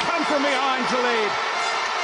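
A male television commentator speaking over steady stadium crowd noise; his voice stops about a second and a half in, leaving the crowd noise.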